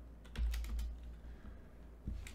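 Typing on a computer keyboard: a few quick keystrokes, most of them in the first second.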